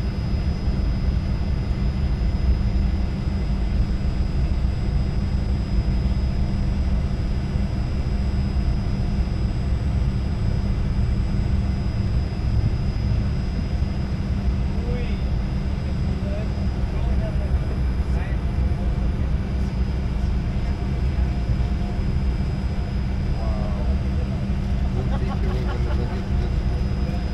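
Cabin noise of a Fokker 100 on the ground at low power: a steady low rumble from its rear-mounted Rolls-Royce Tay turbofans with a thin, steady high whine over it.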